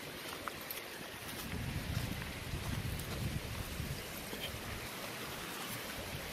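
Shallow snowmelt stream running over gravel and stones, a steady rushing hiss. A low rumble of wind on the microphone comes in from about one and a half to three and a half seconds in.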